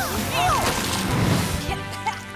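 Water splashing and spraying down over background music, the splash fading after about a second and a half. There are short sliding vocal cries about half a second in.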